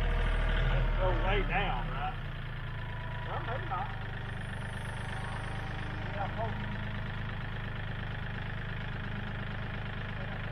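Kioti CK4010hst compact tractor's diesel engine running, louder for the first second or two and then settling to a steady idle. Short bursts of voices call out over it a few times.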